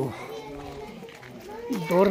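Faint voices of people and children talking, with a louder voice coming in near the end.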